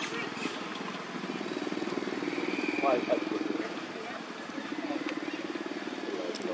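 A small engine running steadily, with brief faint voices about two to three seconds in.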